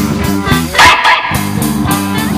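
Live band music with electric guitar and bass, which drops out for a moment about a second in for one loud, dog-like bark, then plays on.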